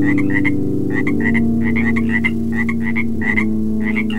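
Frog calls, quick runs of short repeated croaks, layered over sustained low synthesizer drone tones in an ambient electronic piece. The drone shifts to a new note about a second in.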